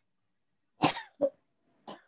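A man coughing three times in quick succession, starting about a second in, the first cough the loudest.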